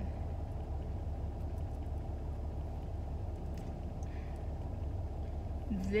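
Steady low hum of a minivan idling, heard inside the cabin, with a few faint clicks from a small cosmetics package being handled about midway.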